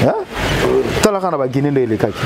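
A man talking, with a short rush of noise in the first second before his voice comes in.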